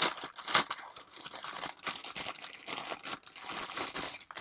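Thin clear plastic kit bag crinkling and rustling as a plastic model-kit sprue is handled and pulled out of it, with a sharper crackle about half a second in.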